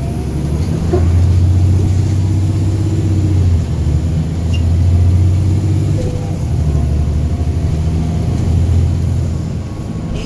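Diesel engine of a NABI 40-SFW transit bus, a Caterpillar C13 ACERT, droning under load from inside the passenger cabin as the bus drives along. Its low hum swells and dips briefly twice and eases near the end.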